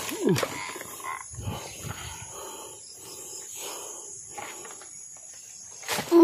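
Animal-like moaning and growling: a falling moan just after the start, then rhythmic rasping sounds about twice a second.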